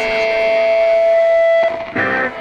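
Rock music: a guitar holds one long note that cuts off about a second and a half in, and new notes come in right at the end.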